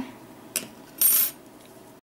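A soft click about half a second in, then a brief, bright metallic clink about a second in.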